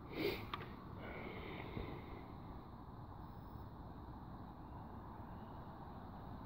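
A short sniff close to the microphone just after the start, followed by a small click. After that there is only a quiet, steady background hiss.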